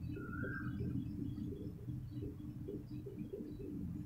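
Marker squeaking on a whiteboard as words are written, one short squeak near the start, over a low steady hum.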